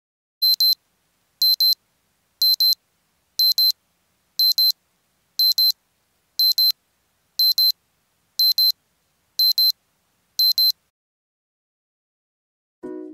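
Smartphone alarm beeping: pairs of short high-pitched beeps, one pair a second, repeating eleven times and then stopping.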